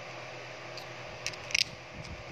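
A few faint, short clicks of a plastic rotary magazine being turned by hand while it is loaded, about a second and a half in, over a steady low hum.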